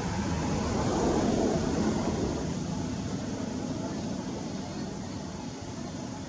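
Outdoor background rumble, a low even noise that swells a little about one to two seconds in and then eases.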